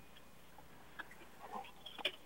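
Quiet room tone with a faint hum, broken by a few soft clicks and a short rustle about a second and a half in.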